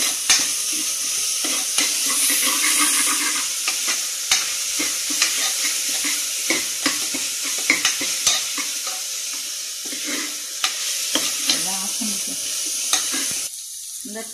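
Chopped onion and whole spices sizzling in hot oil in an aluminium pressure cooker. A steel ladle scrapes and clicks against the pot at irregular moments as they are stirred.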